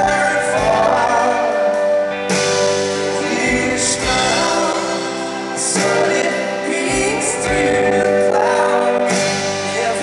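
Live rock band playing: a male lead vocal sung over electric guitars, keyboard and drums, with a cymbal crash about every three and a half seconds.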